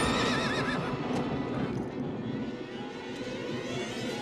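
A horse rearing and whinnying: a loud, high, wavering neigh in the first second that then trails off.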